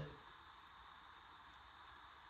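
Near silence: faint room tone, with the tail end of a spoken word dying away at the very start.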